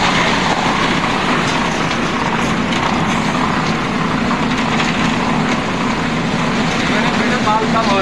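Automatic reversible concrete batching plant running: a loud, steady machine noise with a constant low hum from its conveyor and drum mixer drives. A voice is heard briefly near the end.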